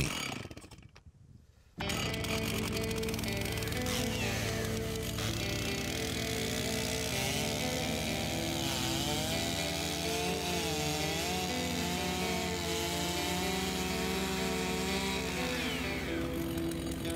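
Stihl chainsaw running and cutting through a log, with background music laid over it. The sound starts suddenly about two seconds in after a near-silent moment and then holds steady.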